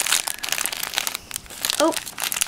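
Thin plastic packaging crinkling as it is handled and pulled open: a dense, irregular run of crackles.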